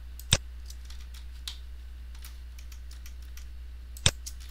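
One sharp computer mouse click about a third of a second in, then a few faint ticks, over a steady low hum.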